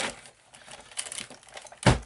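Sizzix Big Shot die-cutting machine in use: its acrylic cutting plates and platform scrape and click as they are pushed into the rollers, with one loud knock near the end.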